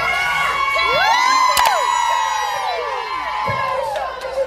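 Crowd cheering and shouting, many high voices whooping over one another. A single sharp click comes about a second and a half in.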